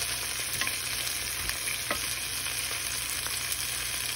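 Sliced red chilies, onion and ginger sizzling in hot oil in a frying pan, a steady hiss with a few faint clicks.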